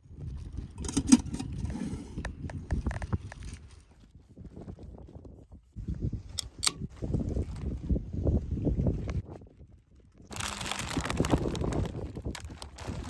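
Wind buffeting the microphone, with handling knocks. About six seconds in, an aluminium beer can's pull tab cracks open in two quick clicks. Near the end, a plastic snack bag crinkles.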